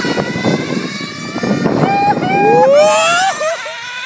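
RC race cars' motors revving up and down, with a whine that climbs in pitch through the middle as they accelerate.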